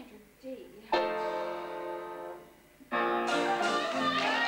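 Piano chords accompanying a stage song: one chord struck about a second in rings and fades away, and another comes in just before the end and is held.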